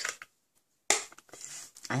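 A sharp plastic click about a second in, followed by light handling noise, as a Stampin' Up ink pad is handled and set down.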